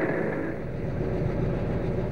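Steady rumble of a vehicle engine, with a low drone setting in shortly after the start.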